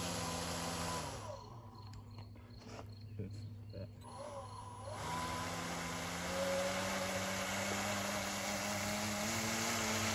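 R/C airboat's motor and air propeller running with a steady whine, cutting out about a second in and starting again about four seconds later. After it restarts, the pitch rises slowly as the boat speeds away.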